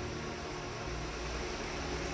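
Steady background hiss with a faint low hum: room tone, with no distinct sound event.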